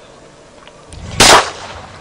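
A single loud gunshot about a second in, with a brief echoing tail.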